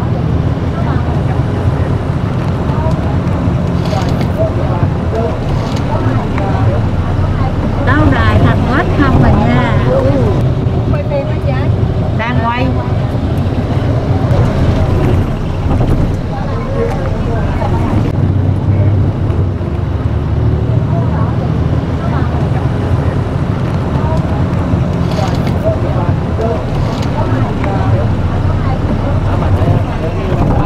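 Steady low rumble of a moving vehicle's engine and road noise, heard from inside the vehicle, with people's voices talking over it, most clearly about a third of the way in.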